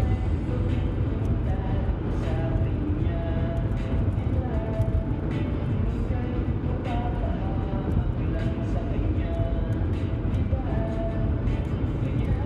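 Steady road and engine rumble inside a car cruising at highway speed, with music carrying a melody, likely with a singing voice, playing over it.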